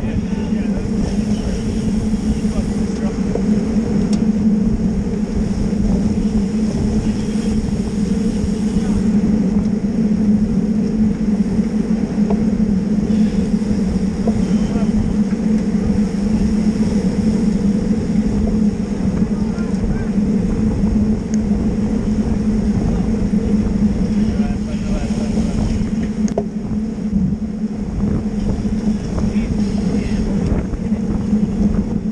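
Steady wind rushing over a bicycle-mounted action camera's microphone, with a continuous low tyre-on-asphalt hum, as the bike rolls along in a pack of racing road bicycles.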